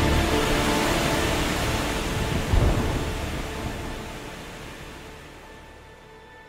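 Rainstorm: a steady heavy hiss of rain with one low thunder rumble about two and a half seconds in, under soft background music. All of it fades out toward the end.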